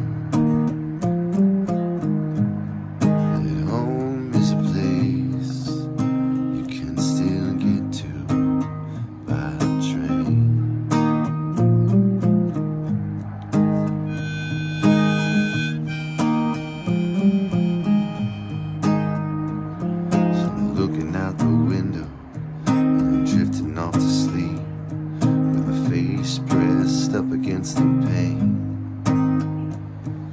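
Strummed acoustic guitar with a harmonica played in a neck rack over it, an instrumental break with sustained reedy melody notes above the chords.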